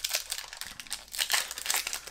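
Foil wrapper of a Pokémon booster pack crinkling in the hands as it is handled, with irregular crackles that grow louder about two-thirds of the way through.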